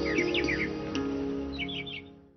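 Opening theme music of a TV morning show: sustained instrumental tones over a stepping low melody, with short bursts of bird chirping mixed in twice, the music dying away toward the end.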